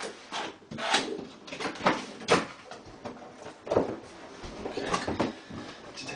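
A large cardboard box being handled and opened: a string of short scrapes and knocks, about one a second, as the box is tilted, laid down on the floor and its flap worked open.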